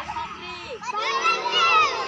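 Many young children's voices at once, overlapping and high-pitched, growing louder about a second in.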